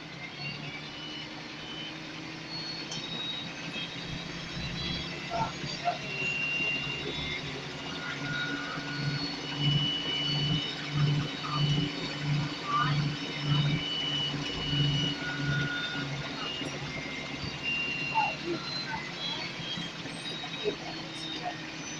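Inside a Scania L94UB single-deck bus under way: the rear-mounted diesel engine runs steadily, with a regular throb about twice a second from about 9 to 16 seconds in. Thin high whining tones come and go over it.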